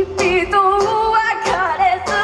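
A young woman singing live, gliding between and holding notes, to her own strummed acoustic guitar.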